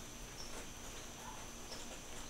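Quiet room tone in a pause between words, with a faint steady high-pitched tone running underneath.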